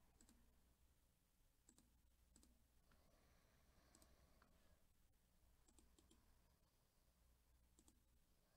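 Near silence with faint computer mouse clicks, single and in quick pairs, scattered through.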